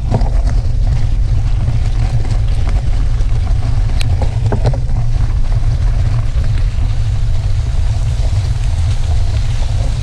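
Steady low rumble of wind on the microphone and bicycle tyres rolling on a gravel road, with a few sharp clicks from gravel and rattling gear, the clearest about four seconds in.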